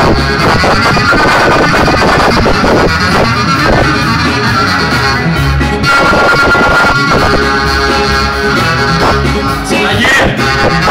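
Live Greek folk dance music led by a clarinet (klarino) over a drum kit, amplified through PA speakers. The clarinet holds one long high note about six seconds in.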